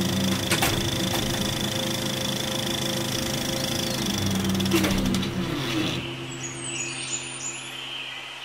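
Film-projector sound effect: a steady motor hum with a rapid mechanical clatter and a couple of sharp clicks, fading out over the last two seconds.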